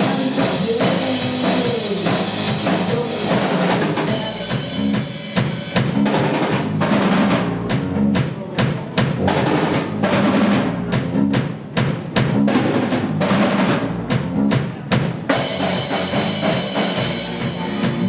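A live rock band playing an instrumental passage between sung lines: drum kit, electric guitar and bass. The cymbals ring bright from about four to seven seconds in and again near the end, with sharper, more separate drum hits in between.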